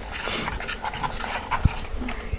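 Soft, irregular squishing and rustling of a craft stick stirring shaving-cream paint in a plastic bowl, with a single low thump near the end.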